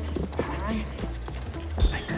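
Stage show music with a voice over it and a few light knocks, then a sharp thump near the end as a performer lands sprawling on the stage floor.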